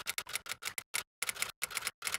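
Typing sound effect: a quick run of short, sharp clicks ticking out in step with text letters appearing one by one, with a brief pause about a second in.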